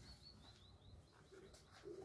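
Near silence with a faint bird chirping: a quick run of short, high chirps, about five a second, that fades out around the middle.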